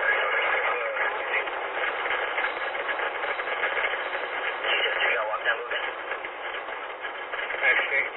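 Police two-way radio traffic, tinny and noisy, with dispatcher and officer voices hard to make out.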